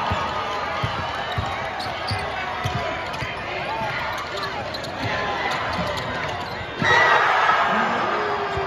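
Basketball dribbled on a hardwood court, its bounces knocking under steady crowd chatter. About seven seconds in, the crowd breaks into a sudden loud cheer for a made go-ahead three-pointer.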